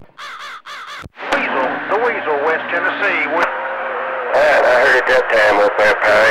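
Citizens Band radio receiver on channel 28 putting out incoming transmissions. High wavering tones fill the first second, then garbled voices continue over a steady hum.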